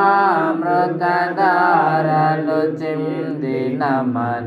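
Singing of a Telugu Christian kirtana (hymn). The notes are drawn out, bending and wavering, with short breaks between phrases.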